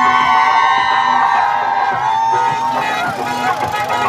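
Noisy street crowd: voices mixed with several long, overlapping held tones, loudest in the first two seconds.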